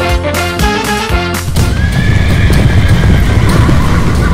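Rhythmic background music, then about a second and a half in, horse sound effects take over: rapid galloping hoofbeats and a long horse whinny, over the music.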